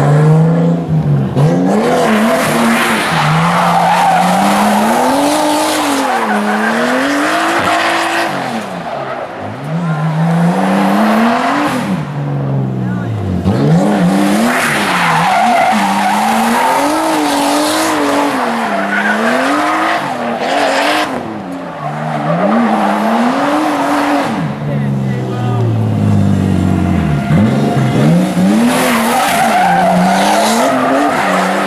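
A Nissan S13 drifting: its engine revs climb and fall every second or two, dropping low several times between slides, while the rear tyres squeal and skid across the asphalt.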